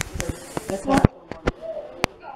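Indistinct young children's voices, with several short sharp clicks and knocks about a second in.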